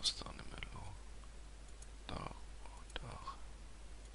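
Sharp computer mouse clicks, one right at the start and another about three seconds in, with soft breathy mumbling close to the microphone in between.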